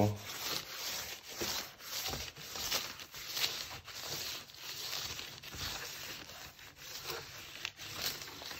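A handmade wooden-knob barren rubbed in quick back-and-forth strokes over brown kraft paper, a dry, irregular rubbing. It is burnishing the paper onto an inked collagraph plate to pull a print by hand without a press.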